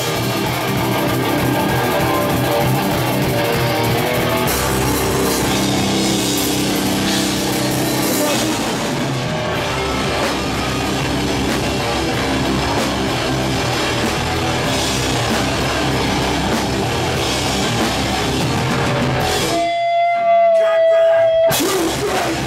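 Live rock band playing electric guitar and drum kit. Near the end the band stops for about two seconds while one held high note sounds alone, then the full band comes back in.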